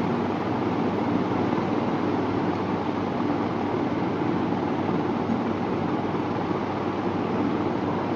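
Steady, even background noise with no voice in it: the room and recording hiss of a mosque's sound system during a silent moment of prayer.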